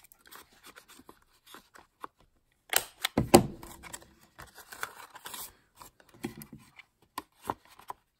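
Handheld corner rounder punch cutting through cardstock: a loud clunk of the punch about three seconds in, amid quieter paper handling and small clicks as the card is fed into the punch.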